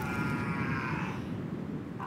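A man's drawn-out, strained vocal sound, like a groan, sliding slightly down in pitch and dying away after about a second and a half, over a rough scratching noise.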